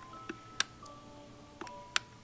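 A few sharp clicks of the plastic shape buttons being pressed on an Igglepiggle boat nightlight toy, which is still switched off and plays nothing of its own, over faint background music.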